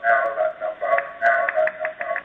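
Garbled, robotic-sounding voice: flat, held buzzing tones that stutter on and off several times a second instead of normal speech, typical of a voice stream breaking up over a webinar connection.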